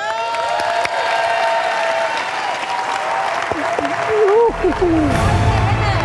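Audience applauding and cheering over a musical sting of held chords that starts suddenly. A bass-heavy band track comes in about four and a half seconds in.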